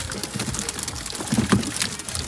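Freshly netted fish flapping and slapping against the floor of a fibreglass boat as the net is shaken out: a scatter of quick wet clicks and slaps with a few low thumps about a second and a half in.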